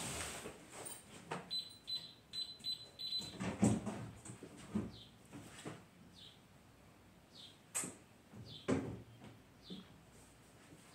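Faint, scattered knocks and clunks of someone moving about off-camera in a room, with a quick run of high beeps early on and a few short, high, falling chirps or squeaks after that.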